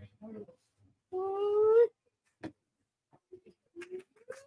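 A drawn-out vocal whine about a second in, rising slowly in pitch: a reaction to downing a shot of black sambuca. A single sharp click follows.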